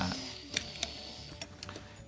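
A few light, sharp clicks of small die-cast metal toy cars being handled and set down on a wooden tabletop.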